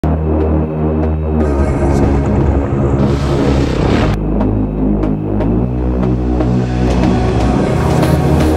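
Background music: sustained low chords changing every second or so, with a swell that builds to a hit about four seconds in.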